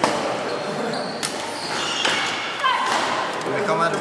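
Badminton rackets striking a shuttlecock in a rally: a few sharp hits about a second apart, ringing in a large sports hall.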